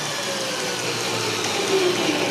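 Variable-speed electric drill driving a small Scotch-yoke model air compressor, running steadily and dropping slightly in pitch as the drill is slowed down.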